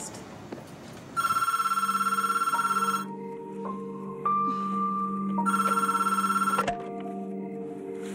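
A telephone ringing twice, each ring a rapid trill lasting about one and a half to two seconds, with a pause of about two and a half seconds between them. Under the rings, a music score of long held notes.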